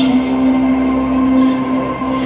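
Marching band's brass and winds holding a long sustained chord, steady in pitch and loudness.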